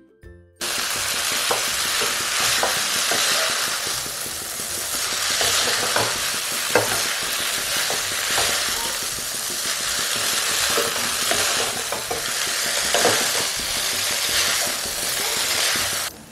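Chow mein noodles and vegetables sizzling in a hot non-stick wok while being tossed and stirred with a spatula, with scattered light clicks and scrapes of the spatula against the pan. The sound drops out briefly near the start.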